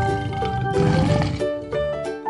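Background music with steady notes, with a lion's roar mixed in under it around the middle.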